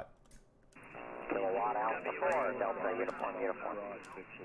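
A man's voice answering over a 40-metre single-sideband amateur radio receiver, narrow and tinny with atmospheric band noise under it, starting just under a second in after a brief quiet.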